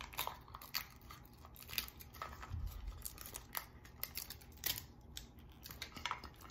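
Plastic wrapping crinkling and crackling in irregular small clicks as it is peeled off a Mini Brands capsule ball by hand, with a soft thump about two and a half seconds in.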